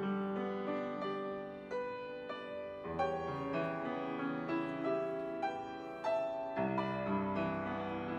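Grand piano played solo: a slow, gentle piece of sustained chords and melody notes, with a new chord struck about every second.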